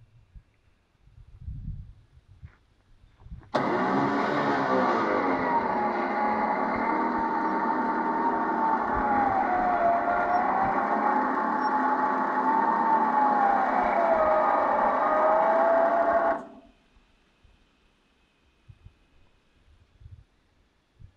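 Front-mounted electric winch running under load for about thirteen seconds, winding in line to pull the vehicle backwards through a snatch-block rig. Its whine starts and stops abruptly, and its pitch dips and recovers a couple of times as the load on the line changes.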